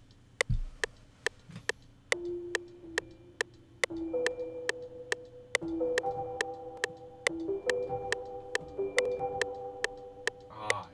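FL Studio's metronome clicking steadily at about 140 beats a minute, with a soft Omnisphere keys patch ('Keys – Rainfall') coming in about two seconds in and playing held notes and chords over it, as a beat idea is played in. A low thump comes about half a second in.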